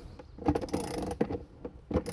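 Ratchet wrench with a socket driving a galvanized lag screw through the back of a cellular PVC window box into the wall framing, its pawl clicking as the handle works back and forth.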